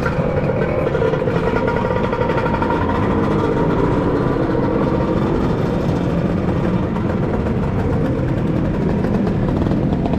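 A scooter engine running steadily, its note wavering a little up and down over a low rumble.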